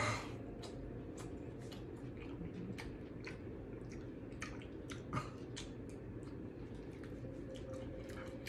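Close-up chewing of juicy fruit: a louder bite at the start, then irregular wet mouth clicks and smacks, a few a second.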